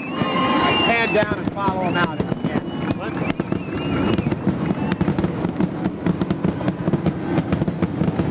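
Large crowd cheering and chattering, with scattered shouts and whistles in the first couple of seconds and many sharp claps and pops crackling throughout.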